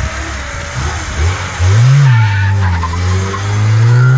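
Classic Lada Zhiguli sedan's four-cylinder engine revving hard as the car pulls away and accelerates. The pitch climbs about a second in, falls back once, then climbs again.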